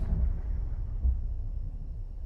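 A deep rumble from a horror film's soundtrack, noisy and without a clear pitch, that slowly fades.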